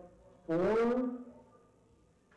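Speech only: a man's announcing voice with one drawn-out word about half a second in.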